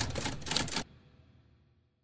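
Typewriter keystroke sound effect: a quick run of sharp clacks that stops a little under a second in.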